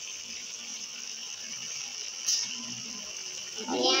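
Oil sizzling steadily in a pan of frying onion-tomato masala, with turmeric and coriander powder just added to fry in it; a single sharp pop about two seconds in.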